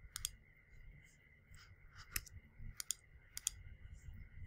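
Faint computer mouse button clicks, a few of them and mostly in quick pairs, over a low background hum.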